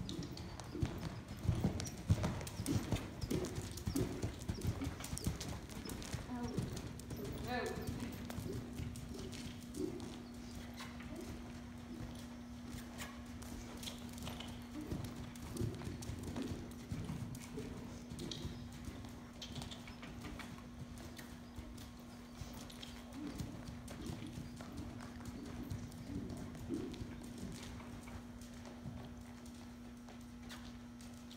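Hoofbeats of a ridden horse on the sand footing of an indoor arena, a repeated rhythmic beat that is strongest in the first few seconds. A steady hum comes in about six seconds in and holds.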